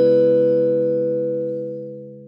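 Short musical logo jingle: a struck chord rings on and slowly fades away.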